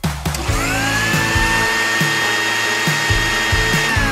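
Electric food blender motor switched on, its whine rising in pitch over about a second to a steady run, then starting to wind down right at the end. Background music with a steady beat plays underneath.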